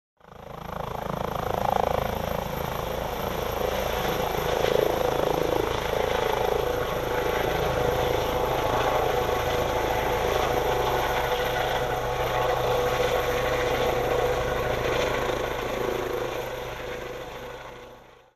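Air ambulance helicopter lifting off and flying away: rotor and turbine running steadily with a fast, even beat of the rotor blades, fading over the last couple of seconds as it leaves.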